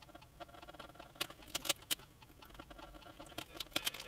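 Faint, scattered scratches and ticks of a small craft knife scoring thin wood, less than a millimetre thick, and the masking tape holding it to a guitar body's edge.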